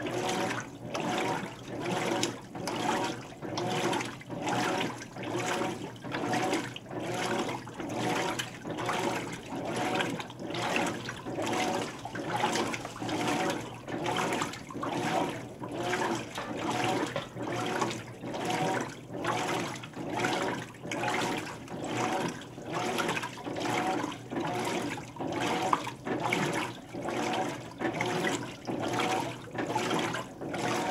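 Hotpoint HTW240ASKWS top-load washer agitating: water and clothes sloshing in the tub in an even rhythm of about one swish a second as the agitator strokes.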